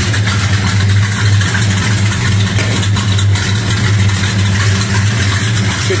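Dodge Super Bee's 440 Six Pack V8 idling steadily after a start from long storage, still on old fuel that the owner reckons should probably be replaced with fresh.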